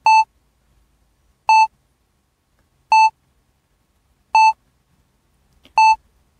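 A short electronic beep on one steady pitch, repeating evenly about every one and a half seconds, five times.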